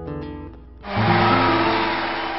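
Six-string acoustic guitar playing its last notes, the final chord left ringing; about a second in, a dense wash of audience applause breaks in over it and begins to fade.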